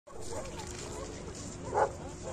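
A dog barks once, loudly, near the end, over the chatter of distant voices.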